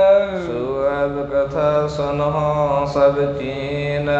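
A man's voice chanting in a long, drawn-out melodic line: the pitch steps down about half a second in and is then held with a slight waver, the melodic recitation a kathavachak uses during katha.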